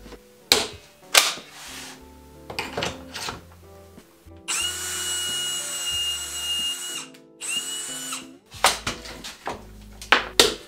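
Cordless drill boring a pocket hole into a board through a clamped pocket-hole jig: a steady high whine for about two and a half seconds, a brief stop, then a short second burst. Sharp knocks and clicks from handling and clamping the jig come before and after the drilling.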